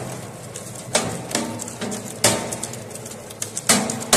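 Twin-shaft shredder's toothed rotors biting into and tearing an aluminum window profile: a few loud, sharp metallic cracks at irregular intervals over the steady drone of the machine's motor and gearbox.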